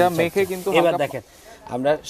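Mostly a man talking, with a hissing scrub of a stiff hand brush rubbed over floor tile beneath the voice.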